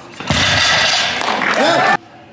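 A loaded barbell with bumper plates is set down on the deadlift platform with a low thud about a third of a second in, under loud cheering and shouting from the crowd. The cheering cuts off suddenly at the end.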